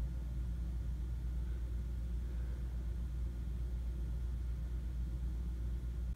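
Steady low hum of background room noise, with no distinct sounds.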